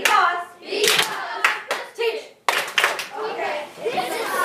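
Several sharp hand claps in the middle, among children's voices.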